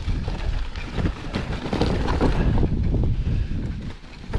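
Strong wind buffeting the microphone, over the rattle and knocks of a suspension mountain bike's tyres and frame riding across a rocky trail.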